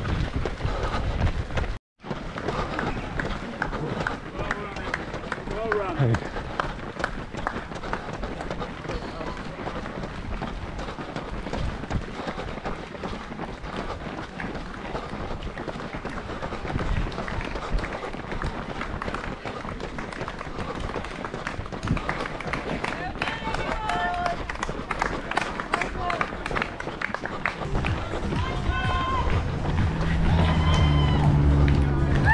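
Running footsteps on a tarmac road, picked up by a body-worn camera's microphone amid steady rustle. The sound drops out for a moment about two seconds in. Voices of spectators and nearby runners come through near the end, as music comes in.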